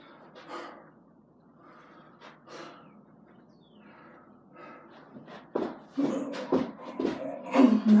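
A man breathing hard and gasping as he recovers between burpees, quietly at first, then louder and choppier with sharp sounds from about halfway through as he starts the next burpee.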